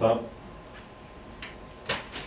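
A man's voice trails off at the start. Then a quiet room, with a faint click and, near the end, a short sharp rustle as he handles the sheets of paper he is reading from.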